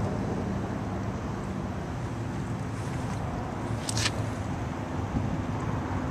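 Harley-Davidson Softail Springer's V-twin engine idling steadily, a low even hum, with a single sharp click about four seconds in.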